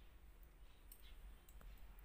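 Knitting needles clicking faintly against each other a few times as stitches are worked, over a quiet low hum.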